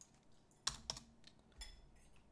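A few separate keystrokes on a computer keyboard, faint, the loudest about two-thirds of a second in.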